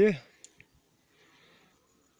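A man's voice trailing off at the end of a phrase, then two small, faint clicks and near quiet.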